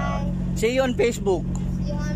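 Steady low drone of a ship's engines, with a short burst of a voice about half a second in.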